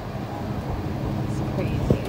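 Steady low rumble of a moving vehicle's engine and tyres, heard from inside the vehicle, with a brief sharp click near the end.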